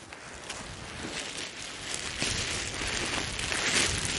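Wind on the microphone and rustling, growing steadily louder, with a few faint footfalls on grass.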